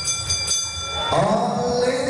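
Boxing ring bell struck, its metallic ringing fading out over about a second; then music with singing comes in.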